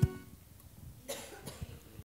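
A low thump as the music stops, then a person coughing about a second in, with a few soft knocks after it.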